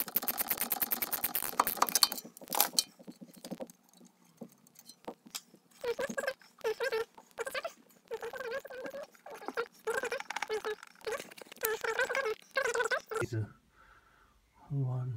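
Ratchet wrench clicking rapidly for the first three to four seconds, turning a nut on a Mercedes air suspension strut while a T45 bit holds the shaft. A voice follows in the second half.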